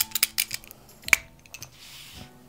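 A run of sharp clicks and taps, the loudest just after a second in, as a marker is handled at the drawing paper, followed by a soft brief rustle near the end.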